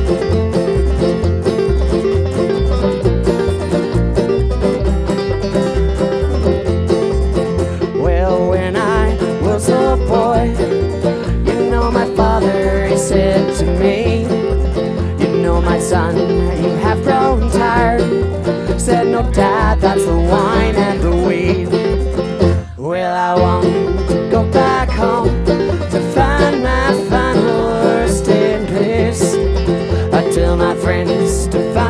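Acoustic string band playing an upbeat bluegrass gospel song live: plucked upright bass keeping a steady beat under acoustic guitar and banjo, with singing over it in the later part. The music cuts out for an instant about two-thirds of the way through, then picks up again.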